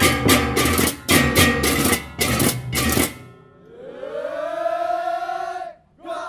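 Balinese baleganjur gamelan ensemble playing three loud accented phrases of clashing cymbals and metal percussion, which break off about three seconds in. A long vocal call follows, rising and then falling in pitch.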